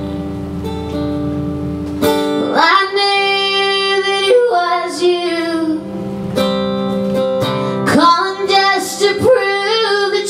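A woman singing live over her own acoustic guitar. The guitar rings alone for about two seconds, then long sung phrases with held notes come in over it.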